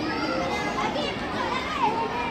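A crowd of schoolchildren talking and calling out at once: many overlapping young voices in a steady hubbub of children at play.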